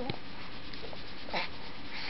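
A baby's brief coo right at the start, then a short breathy sound about a second and a half in, over a steady faint hiss.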